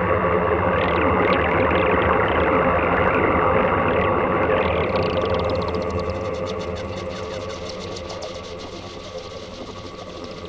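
A Make Noise Eurorack modular synthesizer playing a dense, drone-like stereo texture with steady held tones under it. From about halfway it thins out and fades, leaving a quick fluttering run of small ticks.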